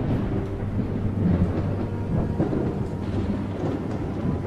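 Thunder-like rumble of an outro sound effect, a dense low noise that swells a little about a second in.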